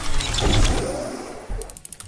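Cinematic title-transition sound effect: a noisy whoosh with a deep boom about half a second in that dies away, then a low thud and a brief rapid flutter near the end.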